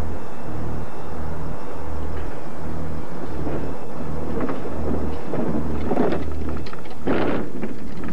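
Thunderstorm: a low rumble of thunder that swells and fades about every second, under a steady hiss of rain, with a louder crackling burst about seven seconds in.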